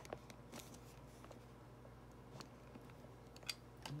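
Near silence: room tone with a low steady hum and a few faint, scattered clicks.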